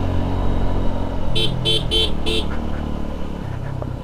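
Motorcycle engine running steadily on the move, with a horn beeped four short times in quick succession a little over a second in.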